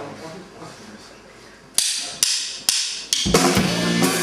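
Drumsticks clicked together four times, about half a second apart, counting in a song; the full band, drum kit and electric guitar, comes in loud just over three seconds in.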